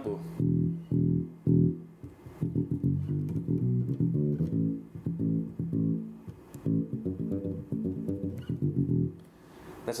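Squier Classic Vibe '60s electric bass played fingerstyle and unaccompanied: a groovy, melodic bass-line hook of short plucked notes in phrases with brief breaks, stopping about a second before the end.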